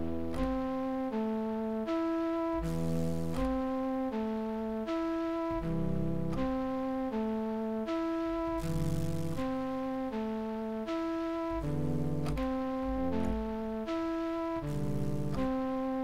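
Synthesized flute melody from FL Studio's Sytrus flute presets, a stepwise run of held notes looping over a hip-hop beat with low bass notes and drums. A second, deeper flute layer is being played in live on a MIDI keyboard over the loop.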